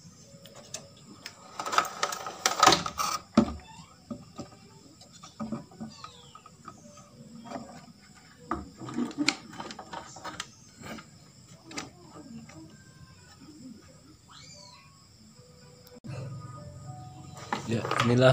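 Knocks, clicks and rattles from a CRT television's main circuit board being handled and turned over on a wooden work table. The busiest clatter comes around two to three seconds in, followed by scattered single clicks.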